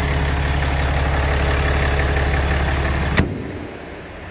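6.7-litre Cummins inline-six turbo-diesel in a 2018 Ram 2500, idling steadily and smoothly, then cut off suddenly with a click about three seconds in.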